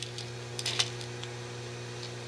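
Steady low electrical hum, with a few light clicks of small titanium parts being moved by hand on a wooden workbench; the clearest click comes a little under a second in.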